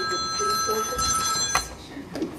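A cell phone ringing with a steady electronic ringtone of several high pitches. It stops abruptly about one and a half seconds in, with a click as it cuts off.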